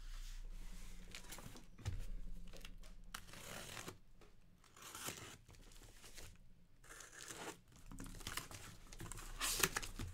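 Cardboard shipping case of trading-card boxes being turned and handled on a table, with irregular scraping, rustling and tearing of cardboard and packing tape as it is opened, loudest near the end.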